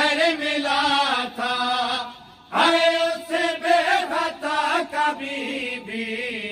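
A group of men chanting an Urdu noha, a Shia lament, together in one voice without instruments. The singing breaks briefly about two seconds in, then the next line begins.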